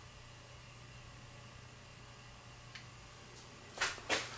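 A quiet, steady low hum with faint hiss from the projectors running, with the old Sony CRT projector on. Near the end there is a short burst of noise as the Insignia pico projector is switched on.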